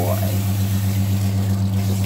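Electric recirculating pump of a dog-bathing system running with a steady low hum, pushing warm water through its hose and out of the hand nozzle.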